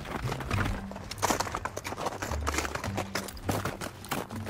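Boots crunching on granular glacier ice as two people walk, a rapid series of gritty steps. Low sustained tones run underneath.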